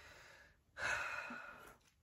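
A woman breathing audibly through her mouth: one breath trails off at the start, then a second, fuller breath comes about a second in and lasts about a second.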